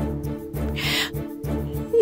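Background music score: held low tones over a soft, evenly pulsing bass, with a short breathy hiss about a second in.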